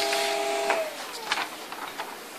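Samsung ML-2165W mono laser printer finishing a test page: its mechanism hums in steady tones that cut off about three quarters of a second in and wind down with a falling tone. A couple of faint clicks follow.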